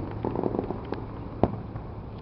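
A few sharp pops, the loudest a single crack about a second and a half in, over a steady low hum.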